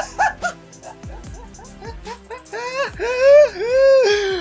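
A young man laughing loudly, in short bursts at first, then in long, high, wailing howls of laughter that are loudest near the end. Background music plays underneath.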